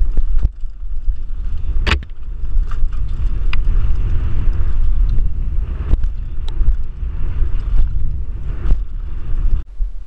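Mountain bike ridden fast down a dirt trail, heard from an action camera on the rider: a heavy rumble of wind on the microphone and tyres on dirt, broken by sharp clacks and rattles of the bike over bumps, the loudest about two seconds in. It quietens shortly before the end as the bike slows.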